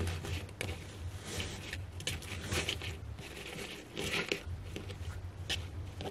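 Cloth ribbon and artificial flower stems rustling and crinkling as hands retie a striped ticking fabric bow, with a few small clicks over a low steady hum.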